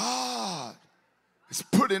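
A man's loud, breathy vocal exhale, a short sigh-like "hah" whose pitch rises and then falls, lasting under a second. About a second and a half in, his speech resumes.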